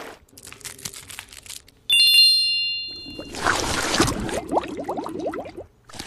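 Faint crackly clicks of fingertips working into a thick cream face mask. About two seconds in comes a bright bell-like ding that rings out for a second or so, followed by a dense stretch of rustling, squishy noise that stops shortly before the end.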